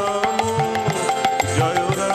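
Instrumental stretch of devotional music: small brass hand cymbals (manjira) struck in a steady rhythm, over a hand drum and a held melody line.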